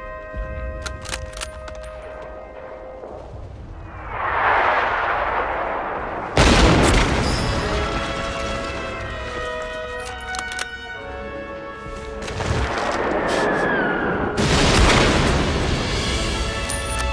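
Orchestral war-film music with sustained held notes, cut across by battle effects: a swelling rush about four seconds in, a sudden loud boom a couple of seconds later, and another loud boom near the end.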